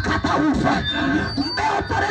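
A woman's voice through a PA system, loud and impassioned but with no clear words, over music playing behind it.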